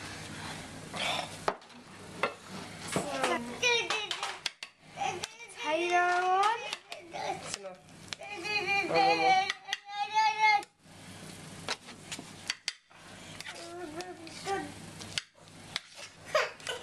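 A child's high voice talking or calling out, its pitch gliding up and down, with some light clinks of plates and cutlery.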